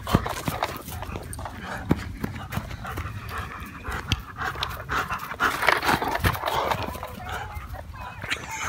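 A German Shepherd panting as it runs about with a plastic toy in its mouth, amid scattered sharp knocks and clatters.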